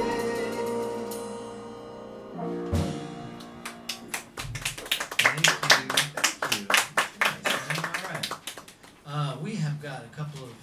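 A jazz band's closing chord of piano, double bass and drums rings out and fades, with a last low note about three seconds in. Then a small audience claps for about five seconds.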